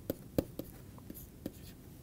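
A stylus writing on a tablet as an equation is handwritten: a few short, quiet taps with light scratching in between.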